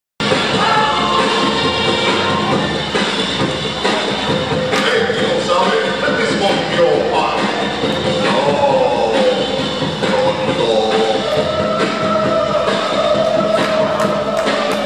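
A soul record with a lead vocal, playing loudly and steadily; the singer holds a long note in the last few seconds.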